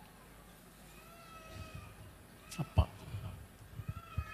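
A pause in the talk: a handheld microphone being handled, with a sharp knock about three seconds in, the loudest sound here. Under it are faint, high-pitched, gliding calls.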